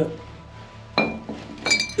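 Glass bottles and jars clinking against each other as they are handled: one clink with a short ring about halfway through, then a quick cluster of several clinks near the end.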